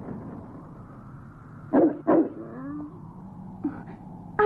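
A large cartoon dog, a Great Pyrenees, barks twice in quick succession about two seconds in, then gives a brief lower note.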